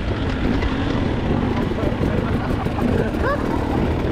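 Two-stroke enduro dirt bike being ridden along a trail, heard from on board: engine running steadily under a dense low rumble of riding noise.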